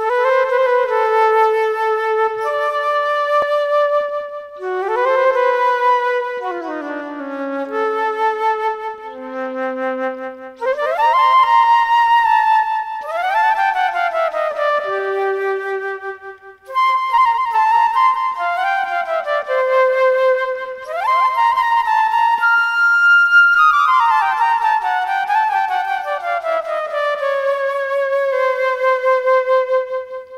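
Solo flute improvising a free melody: phrases of held notes and downward-sliding runs, separated by short breaths.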